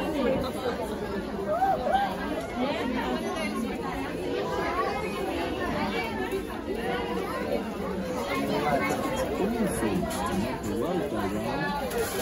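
Background chatter of many people talking at once, with no single voice standing out: the hubbub of shoppers in a busy shop.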